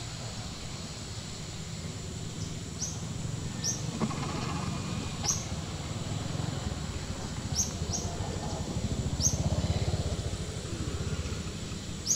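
A small bird gives about seven short, high chirps at irregular intervals, over a steady low outdoor rumble that grows louder near the end.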